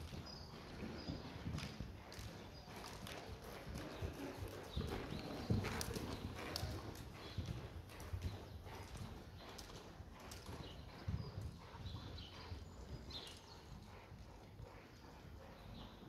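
A horse's hooves striking a soft indoor arena surface in a run of dull thuds, loudest about five seconds in.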